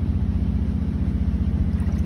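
Boat engine idling with a low, steady, evenly pulsing throb.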